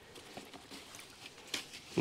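Faint small taps and clicks of hands working a plant cutting in a bucket of water, with one slightly louder click about one and a half seconds in.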